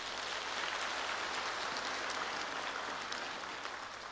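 A large audience applauding, a steady clatter of many hands clapping that eases off slightly near the end.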